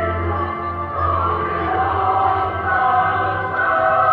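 Choral religious music: a choir singing long held notes over a steady low bass.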